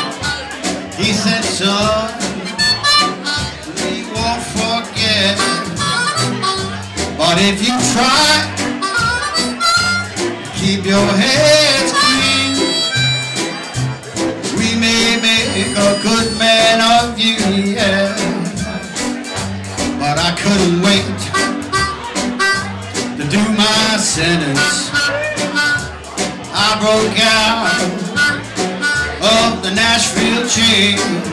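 Live band playing with an amplified harmonica solo, the harmonica played cupped against a hand-held microphone, over the band's steady rhythm. The harmonica line bends and slides between notes.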